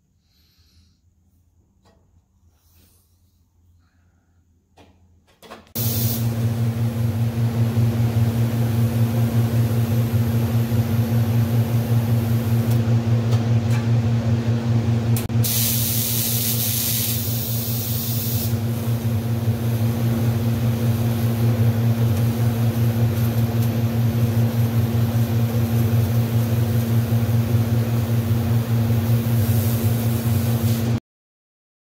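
Wire-feed welder arc-welding a steel pipe into a muffler: after a few quiet seconds of handling, the arc strikes about six seconds in and runs as a steady crackling hiss over a low electrical hum, briefly harsher and hissier in the middle.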